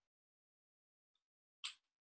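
Near silence: room tone, with one short noise near the end.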